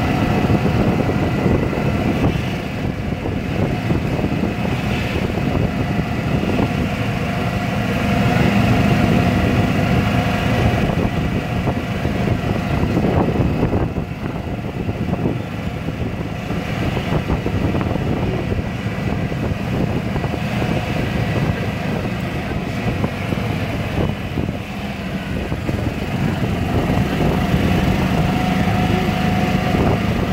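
Small engine of a light vehicle running steadily while it is ridden along a road, with a faint steady whine over a low rumble and a few brief dips in level.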